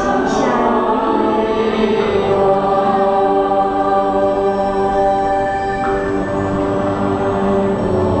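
Buddhist devotional chant sung by many voices together in long, slowly changing held notes.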